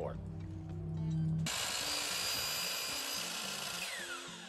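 DeWalt sliding compound miter saw cutting a pine framing strip: the noise of the blade through the wood starts abruptly about a second and a half in, with a falling whine near the end, over background music.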